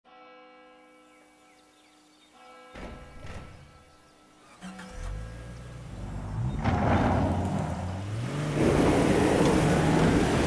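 A car engine accelerating away; its pitch climbs, drops back and climbs again as it shifts up through the gears, growing louder over the last few seconds.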